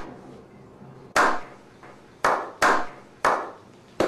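A slow hand clap: single claps spaced about a second apart, coming closer together near the end.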